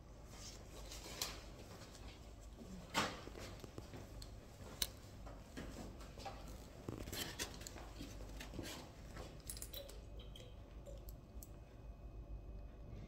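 Faint scattered clicks, taps and rustles of handling in a small room, with a sharp click about three seconds in and another just under five seconds in.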